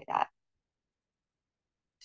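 A woman's voice ending a word, then dead silence for over a second and a half, as on a noise-gated video-call line.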